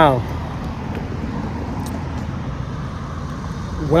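Steady low rumble of road traffic, with no single vehicle or event standing out.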